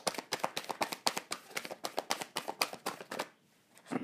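A deck of oracle cards being shuffled by hand: a rapid, irregular run of soft card slaps and flicks that stops about three seconds in.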